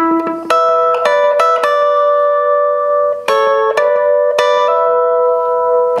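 Clean electric guitar, a Fender Telecaster, playing a hybrid-picked rockabilly lick: single bass notes alternating with picked chords, each chord left ringing out.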